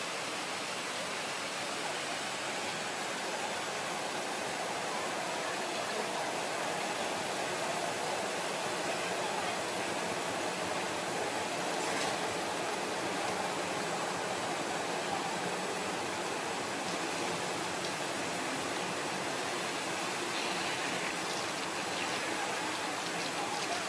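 Steady rush of running water from a park pond's fountain, with one faint click about halfway through.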